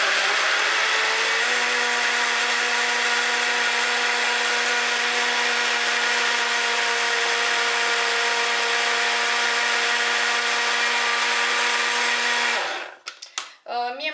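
Countertop blender running on a blackberry purée with banana: the motor picks up speed over the first second or so, then holds a steady whine. It switches off about a second before the end.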